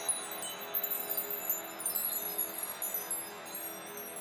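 Music dying away in a shimmer of tinkling high chimes over held notes, the whole sound slowly fading.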